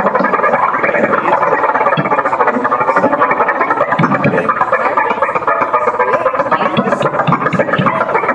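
Live electronic music from a synthesizer setup: a dense, rapidly fluttering, gurgling synth texture that plays continuously.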